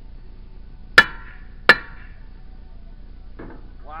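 Two sharp metallic clanks about a second and then nearly two seconds in, each with a brief ring: a hand tool striking metal at a backhoe wheel's hub while its lug nuts are being taken off to remove a flat tire.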